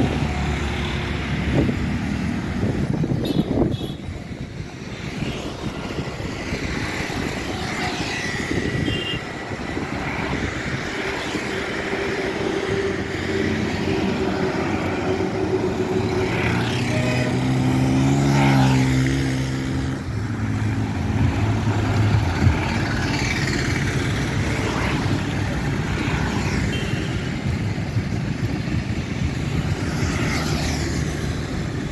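Road traffic on a busy multi-lane road: cars and vans driving by in a steady rush of tyre and engine noise. Just past the middle one louder vehicle engine passes, its pitch rising then falling as it goes by.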